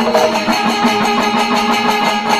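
Kerala temple ensemble playing loudly: chenda drums beaten in a fast, dense rhythm while the curved brass kombu horns hold a steady blaring note.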